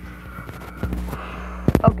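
Handling noise: soft rustling, then a few sharp knocks close together near the end as the recording device is moved, over a steady low electrical hum.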